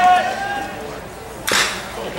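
A single sharp crack of a metal baseball bat striking a pitched ball about one and a half seconds in, with a short ring after it.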